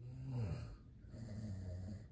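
A low voice making two breathy, wordless sounds: a short one that falls in pitch, then a longer, steady one.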